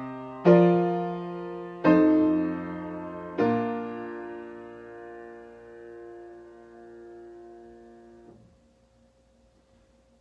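Piano playing the closing chords of a chord progression, three chords struck about a second and a half apart, with the bass line ending so, so, do on the tonic. The final chord is held and dies away for about five seconds before it is released.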